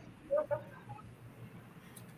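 A pause between speakers on a video call: low background noise with one brief, faint pitched vocal sound about a third of a second in.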